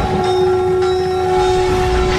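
A loud, steady drone held on one pitch with ringing overtones, with faint higher tones coming and going over it.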